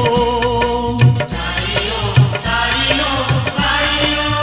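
Interlude of a Hindi devotional song with no lyrics: a held, wavering melody line over a steady drum beat, with a low drum hit about once a second and quicker light percussion ticks between.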